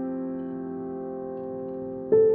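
Grand piano chord left ringing and slowly fading, with no new notes struck.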